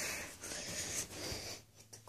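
Rushing breath and movement noise from a person right next to the phone's microphone, fading near the end.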